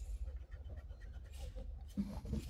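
Faint rustles and light scrapes of fingers and a clear plastic ruler on graph paper.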